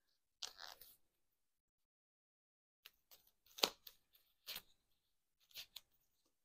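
Disposable plastic gloves being peeled off the hands: faint crinkling rustles, one near the start and then a few short crackles, the sharpest a little past the middle.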